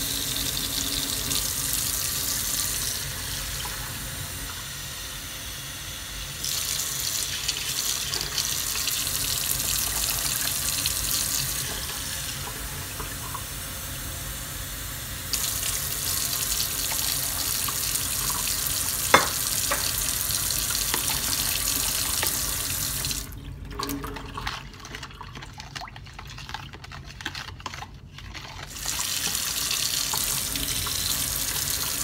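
Kitchen tap running into a stainless steel sink, the water sound shifting in level as a measuring cup is held under the stream and filled with cool water. A single sharp clink comes about two-thirds of the way through, and the water is quieter for several seconds near the end.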